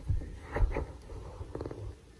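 Handling noise close to the microphone: low thumps and rustling of bedding, the loudest thump about half a second in, with a flurry of small clicks near the end.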